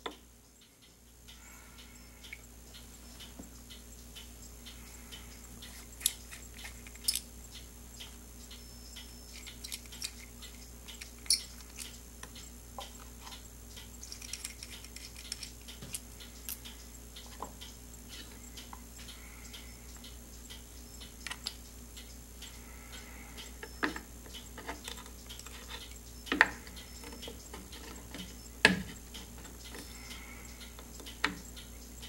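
Scattered sharp clicks and taps of small metal pen-kit parts being handled and fitted together on a wooden bench, a few louder single ticks standing out, over a steady low hum.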